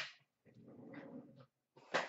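Trading cards and a card box being handled on a glass counter: a sharp rustle at the start and a louder one near the end, with a low grumbling sound between them.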